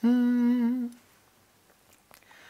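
A man humming one steady held note, unaccompanied, for about a second before stopping: the opening tune-up of a Punjabi song.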